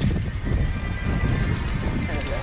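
Steady wind buffeting on an action camera's microphone as a mountain bike rolls across grass, a low rumbling noise with tyre and bike rattle mixed in.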